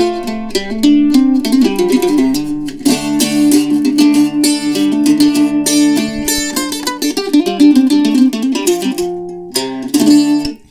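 Eastman F-style mandola, tuned a fifth below a mandolin, played with a pick: a fast run of picked notes and chords on its paired strings, with a deep, full voice. It dips briefly near the end before one last chord.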